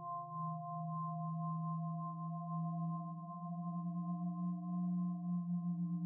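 Electroacoustic music: several pure tones held together at low and middle pitches, wavering slightly in loudness. Less than a second in, one middle tone gives way to a slightly lower one.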